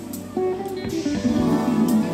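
Live soul band music with guitar notes to the fore, swelling up about half a second in.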